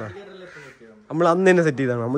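A man speaking, with a short pause in the first second.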